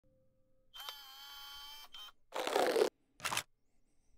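Logo-intro sound effects: a held pitched tone for about a second, then two short bursts of noise, the second shorter than the first.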